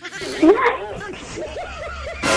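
People laughing: giggling in short repeated bursts that waver in pitch, a woman's laugh among them.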